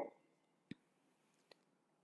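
Near silence, with two faint clicks a little under a second apart.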